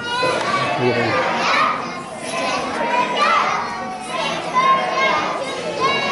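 A group of young children's high voices talking and calling out over one another.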